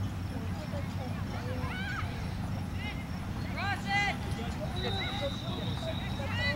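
Distant shouts and calls from soccer players and spectators across the field: a few short cries, the loudest about four seconds in, over a steady low rumble.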